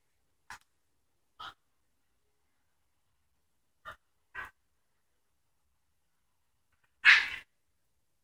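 Near silence broken by a few faint, short breath sounds and one louder breath or sniff close to the microphone about seven seconds in.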